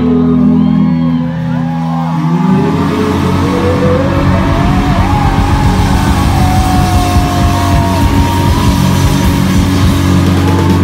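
Rock band playing live and loud: held guitar chords, then about two and a half seconds in the full band with drums comes crashing in, and a sustained high guitar line rises and slides above it.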